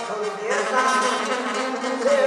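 Live Tierra Caliente band music with a man's voice over it, the band's sustained notes running underneath.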